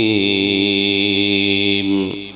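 A man's voice chanting Quranic recitation in tajwid style, holding one long melodic note at a steady pitch that ends about two seconds in and dies away in a short echo.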